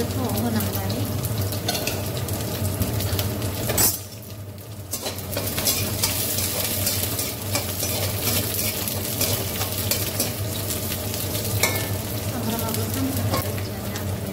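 Sliced onions and dried red chilli sizzling in hot oil in a kadai, stirred with a spatula that scrapes along the pan. A sharp knock comes just before four seconds in, and the sizzling drops away for about a second before returning.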